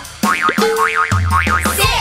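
Children's song music with a cartoon boing sound effect: a high wobbling tone that sweeps up and down about five times, over a held note and a bass note.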